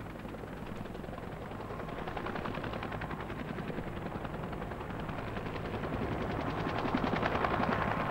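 Bell UH-1 Huey helicopter's rotor chopping in a rapid, even beat that grows steadily louder.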